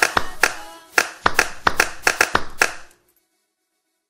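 The end of an Afropop song: a run of sharp handclap hits in rhythm over the last fading traces of the music, stopping abruptly about three seconds in.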